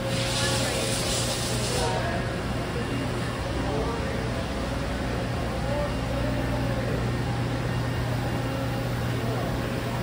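Steady low hum of a large engine repair shop floor, machinery and ventilation running, with faint voices in the distance. A brief hiss sounds in the first two seconds.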